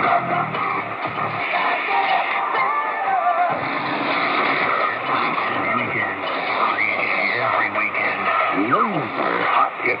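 Music with vocals from a distant shortwave AM broadcast, played through a small receiver's speaker, with the narrow, muffled sound of AM reception. Near the end, pitched tones slide up and down.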